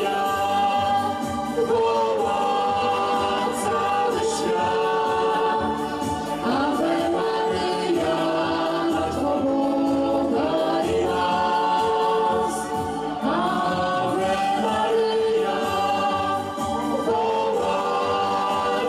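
A man and a woman singing into microphones, with electronic keyboard accompaniment, amplified through a PA. The singing runs on in long held notes with no break.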